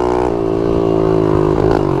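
Mini motorcycle's small engine running under way as it is ridden, its note easing slightly lower partway through.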